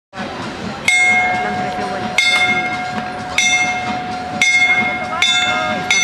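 A track-cycling lap bell rung repeatedly, six clanging strikes that come faster toward the end, each ringing on over the last, with voices beneath.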